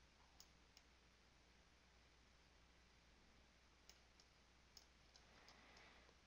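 Near silence with a few faint, widely spaced computer mouse clicks.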